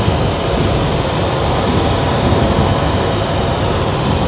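Steady engine and road noise heard inside the cab of a moving vehicle, a constant low rumble with hiss above it.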